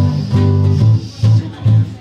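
Live band music: a Yamaha Silent Guitar plays a choppy, repeated low riff, about three short stabs a second with brief gaps between them.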